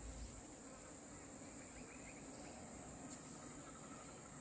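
A faint, steady, high-pitched insect drone, with a few brief, faint bird chirps over it.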